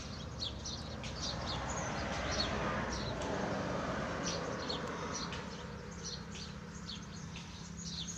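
A coloured pencil scratching back and forth on notebook paper as a drawing is shaded in, loudest in the middle. Small birds chirp repeatedly in the background.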